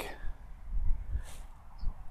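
Wind rumbling low and unevenly on the microphone, with a faint short high chirp near the end.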